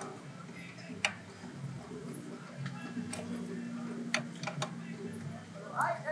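A few sparse, sharp metallic clicks of a wrench working the rear nut on the throttle cable, over a low steady hum. A brief higher-pitched sound comes near the end.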